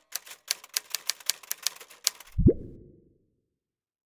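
Typewriter keys clacking rapidly, about five strokes a second for just over two seconds, then one loud low thud.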